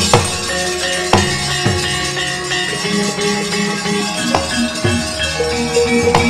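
Javanese gamelan music: metallophones ringing steady held notes, punctuated by a handful of sharp percussive strokes.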